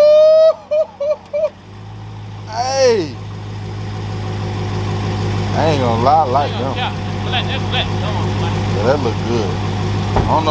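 An engine idling: a steady low hum that sets in a couple of seconds in and slowly grows louder. Voices are heard over it, starting with a loud drawn-out exclamation that rises in pitch, then a falling 'ooh' and scattered talk.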